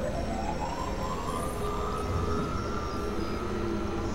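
Experimental electronic noise music: a dense, steady wash of layered noise and low drones. Over it, one tone glides upward for about a second and a half, then holds level before fading out about halfway through.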